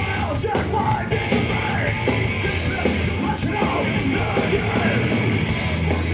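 Hardcore band playing live at full volume: distorted guitar, bass guitar and drums, with gruff shouted vocals over the top.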